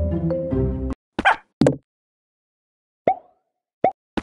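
Mobile game background music that cuts off abruptly about a second in, followed by short game sound effects: two quick bright pops, then after a pause two brief pitched blips near the end.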